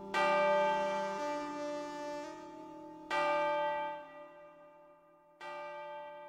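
Church-bell-like tones in a slow instrumental piece: three strikes, the last one softer, each ringing on and fading slowly over held lower notes.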